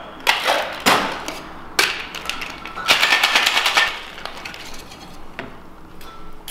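Ice rattling inside a metal cocktail shaker: a few separate knocks in the first two seconds, then about a second of fast, hard shaking about halfway through, after which it goes quieter.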